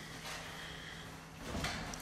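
Quiet room tone with a faint steady low hum, and soft handling noise in the last half second.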